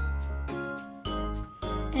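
Background music: a light, tinkling children's tune over a bass line with a steady beat of about two a second.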